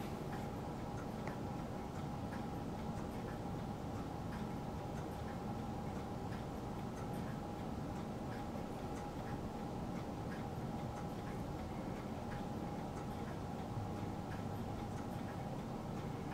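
Quiet room tone: a steady faint hum with soft, regular ticking throughout.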